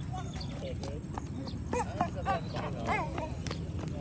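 Footsteps on a concrete road, a series of light knocks, with faint distant voices and a low steady outdoor rumble.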